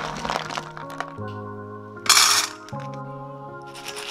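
Dry dog kibble rattling as it is scooped and poured into a metal bowl, with one loud half-second rush about two seconds in, over background music with long held notes.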